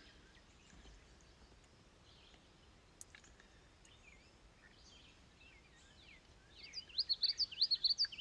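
Birds chirping faintly, turning into a quick, louder run of chirps over the last second or so. A single click about three seconds in.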